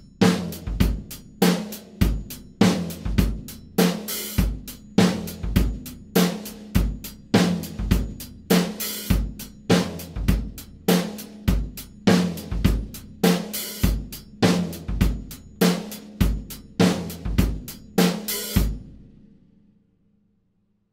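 Drum kit playing a steady disco verse groove on hi-hat, bass drum and snare, with the snare hit together with the floor tom on beat two of every bar and an open hi-hat on the "four-and" of every second bar. The groove stops shortly before the end and the kit rings away.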